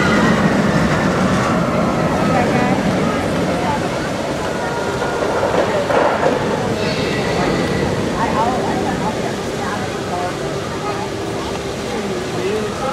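Roller coaster train running along its track after passing close by, a steady rumble and clatter that slowly fades, with the voices of a crowd around it.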